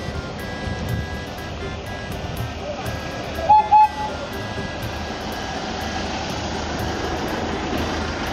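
Tourist road train running as it approaches, with music playing, and two short horn toots about three and a half seconds in.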